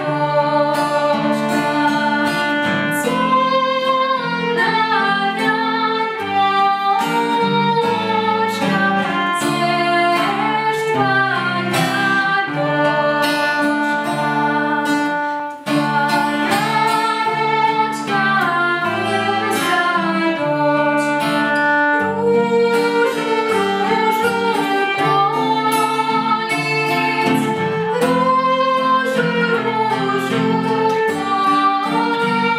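A folk-style song: acoustic guitar strumming and a violin accompany children's voices singing the melody.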